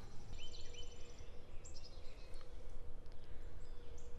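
Outdoor ambience: a steady low rumble with a faint steady hum, and a few short, faint bird chirps.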